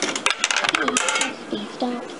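Coins going into a coin-operated kiddie ride's coin mechanism: a quick run of metallic clicks and rattles lasting about a second.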